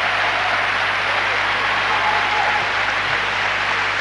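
Large arena crowd applauding steadily, a very warm ovation for an ice-dance performance.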